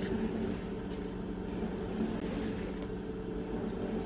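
A steady low machine hum, with a faint click about two seconds in.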